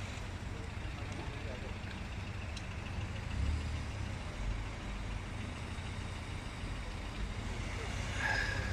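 Car engines idling, a steady low rumble that swells briefly about three and a half seconds in.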